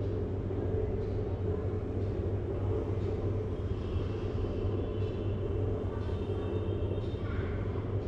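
Steady low hum of room background noise, unchanging throughout.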